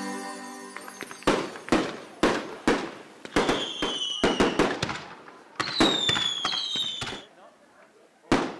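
Fireworks display: a rapid, irregular series of sharp bangs from bursting shells, with two whistling fireworks that glide slightly down in pitch in the middle. Music fades out in the first second.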